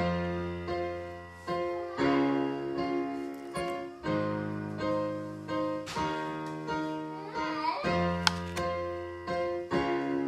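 A slow piece played on a digital piano: sustained chords that change about every two seconds, under a melody.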